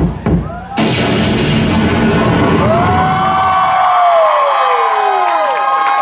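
Live electronic dance track at its close, with a crowd cheering and screaming over it. The bass beat drops out a little past halfway, leaving high screams and tones that glide downward.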